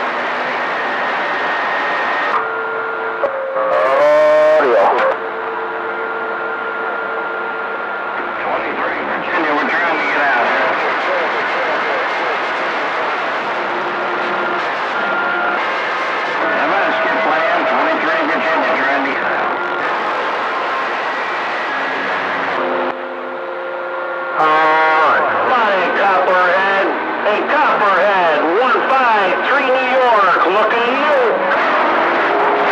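CB radio receiver on channel 28 picking up skip: hissing static with several distant stations' garbled, overlapping voices and steady whistle tones from carriers beating against each other. Warbling tones sweep upward about four seconds in and again about twenty-five seconds in.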